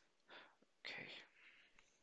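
Near silence with two faint, brief breathy sounds from a person near the microphone, like a whispered mutter or breath, about half a second and a second in.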